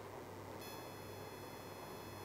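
A faint, steady, high-pitched electronic whine starts about half a second in and holds, over a low hum and faint hiss.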